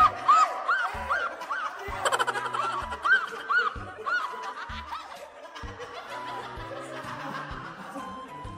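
A run of high, quick laughter bursts over background music with a steady low beat. The laughter dies away after about five seconds, leaving the music.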